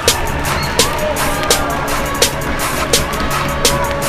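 Live basketball game sound in a gym: sneakers squeaking on the hardwood floor and a ball bouncing, as irregular sharp knocks mixed with short squeaks.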